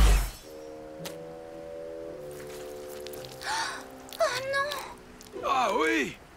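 Cartoon soundtrack: a falling whoosh that ends in a low thump at the very start, then a held music chord, with characters' short gasps and strained vocal sounds over it in the second half.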